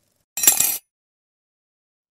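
A short, bright clink sound effect, under half a second long, about a third of a second in.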